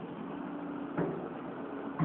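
Caterpillar tracked excavator's diesel engine idling steadily, with a single sharp clunk about halfway through.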